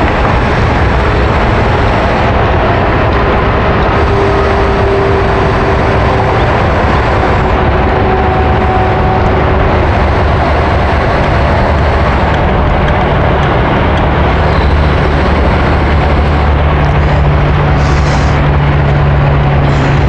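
Steady engine-like rumble with a low hum that grows a little stronger in the last few seconds.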